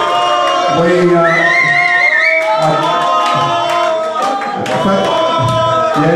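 Several voices singing together, with one high voice holding a wavering note about a second in.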